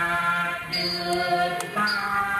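A solo voice singing a Thai classical song in long held notes, moving to a new pitch twice.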